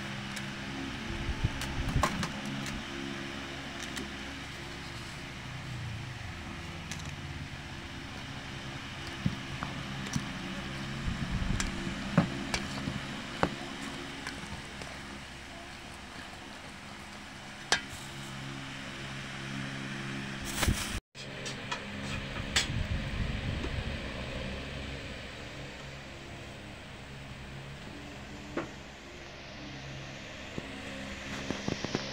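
A plastic rice paddle stirring and scraping soft, egg-coated bread cubes in a metal bowl, with a few sharp clicks against the bowl, over a steady low hum.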